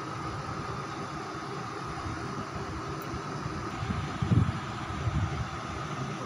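Steady background hum and hiss with a constant mid-pitched drone, and two short low bumps about four and five seconds in.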